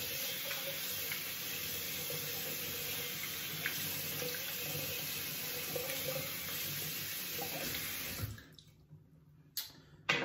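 Bathroom tap running steadily into a sink, a constant rush of water, shut off abruptly about eight seconds in. A single sharp click follows shortly before the end.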